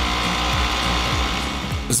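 A racing go-kart's engine running with a buzzing, rattly mechanical sound, under background music.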